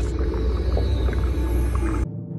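Deep, steady underwater-style rumble with a faint sustained drone and small ticks: ambient soundtrack sound design. It cuts off sharply at the very end, leaving low tones that die away.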